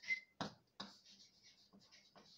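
Chalk scratching on a blackboard in a series of short strokes as a word is written by hand.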